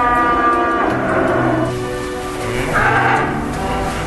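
Cattle mooing: one long call that rises and then holds at the start, and a shorter, rougher one about three seconds in, over soft background music.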